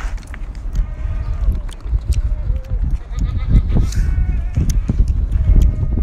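Ostriches pecking at a feed cup and the wire fence: a quick, irregular run of sharp taps and knocks over a steady low rumble.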